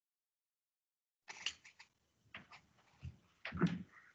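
A few faint, scattered clicks and small knocks of desk and computer handling, with a short low sound among the last of them.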